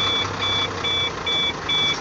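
A Howo dump truck's warning beeper sounds in an even run of about two beeps a second while the dump body is raised. Beneath it, the truck's diesel engine runs as the truck creeps forward in first gear.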